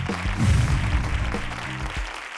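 A game-show music sting with applause and clapping over it, swelling about half a second in.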